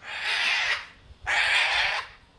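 A cockatoo screeching twice, two loud harsh calls each under a second long, about half a second apart.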